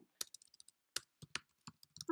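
Computer keyboard typing: a quick, irregular run of light keystrokes as a word is typed into a line of code.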